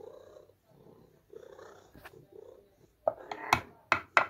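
A domestic cat purring, in soft repeated pulses, then a loud clatter of clicks and scrapes about three seconds in as wet food is tipped and scraped from a metal tin into a pet bowl.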